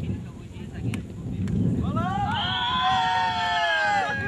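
A person's long, drawn-out shout from the sideline, starting about two seconds in: it rises, then holds and sinks slightly for about two seconds. Before it, wind rumbles on the microphone.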